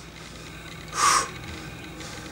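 A man's single short breath out during a resistance-band pull-apart, about a second in, over low room noise.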